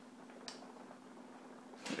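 Faint steady hum from the running Dell Inspiron 8100 laptop, with a light click about half a second in.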